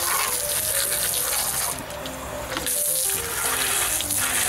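Garden hose on a jet-spray nozzle blasting water into the hub of a dishwasher spray arm, a steady hiss and splatter on paving as the water flushes limescale out through the arm's holes. The spray briefly drops in level about two seconds in, then comes back.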